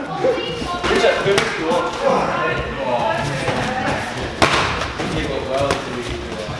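Gloved punches and kicks landing in Muay Thai sparring: a few sharp thuds, the loudest about four and a half seconds in, over talk in a large, echoing gym hall.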